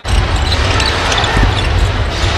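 Live basketball game sound: a ball being dribbled on the hardwood over steady arena crowd noise.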